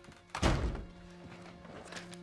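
A single heavy thud about half a second in, dying away within half a second: a wooden door shutting. Soft background music with sustained tones runs underneath.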